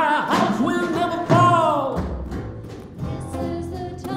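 Live worship band playing a song with singing: voices over acoustic guitar, electric bass, keyboard and drums. The sung notes slide downward in the first half, then the band carries on more quietly with a steady bass line before the next line begins.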